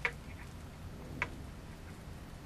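Two faint light ticks about a second apart over a low steady room hum: fingers handling thread and tulle while tying a knot.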